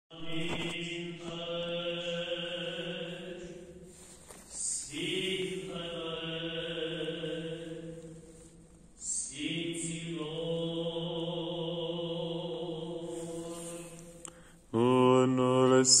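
Orthodox church chant in Romanian, sung in long held notes. It comes in three phrases of about four seconds each with short breaks between, and a louder phrase begins just before the end.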